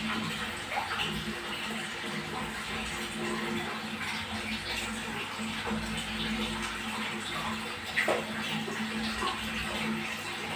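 Water splashing and sloshing as large oscar fish crowd and snap at food held in a hand, with a sharper splash about eight seconds in. A steady low hum runs underneath.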